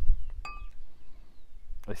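A single short glass clink about half a second in, with a brief ringing tone: a brown glass beer bottle knocking against a pint glass as beer is about to be poured.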